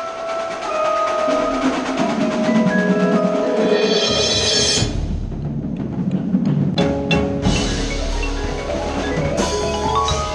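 A percussion ensemble playing, heard close from a marimba: held, ringing mallet notes, with a high shimmering swell that builds about three and a half seconds in and cuts off near five seconds, a low rumble underneath from then on, and sharp struck accents near seven and nine and a half seconds.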